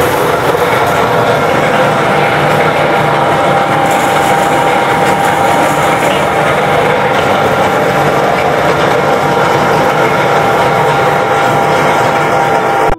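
Electric household flour mill (chakki) running and grinding wheat into flour: a loud, steady grinding noise with a constant motor hum.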